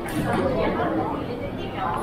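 Indistinct chatter of many shoppers' voices on a busy indoor shop floor.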